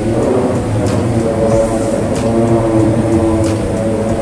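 A voice chanting a du'a (supplication prayer) in a mosque room, drawn out in long held notes that shift pitch every second or so.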